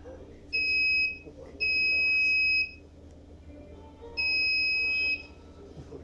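Electronic buzzer on a small robot car giving three high, steady beeps, the first short and the next two about a second long, sounded as the bot's horn from its Android control app.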